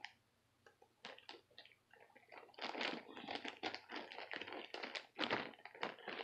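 Plastic ziplock bag crinkling and rustling in irregular crackles as it is handled and its zip seal is pulled open.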